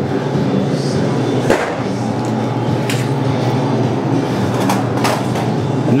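A steady low machine hum fills the room, with a few light clicks and knocks from the knife and hook on the meat and table.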